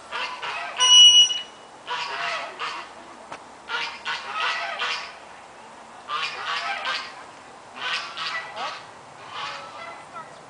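Geese honking in repeated bursts of calls every second or two. About a second in, a brief loud, shrill steady tone stands out above them.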